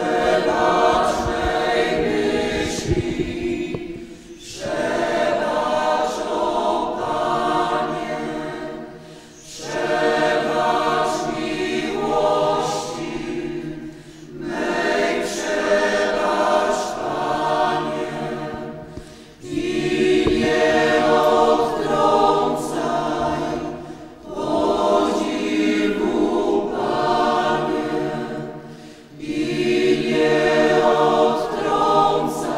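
Mixed church choir singing a hymn in phrases of about five seconds, each followed by a short break for breath.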